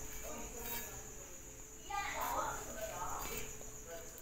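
Quiet handling of a cloth tape measure against a plant's leaves, over a steady high hiss and a faint low hum. A faint mumbled voice comes about two seconds in.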